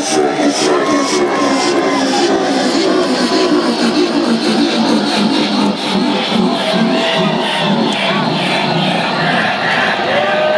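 Loud electronic dance music with a steady, fast beat, played over an arena PA and heard from within the crowd, with the audience cheering along.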